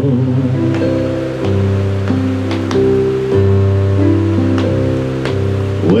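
Electronic keyboard playing an instrumental passage of held chords that change roughly once a second, over the steady hiss of a fan close to the microphone.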